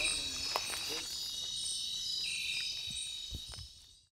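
Insects chirping in a steady high-pitched outdoor night ambience, with a few faint low knocks near the end, fading out at the close.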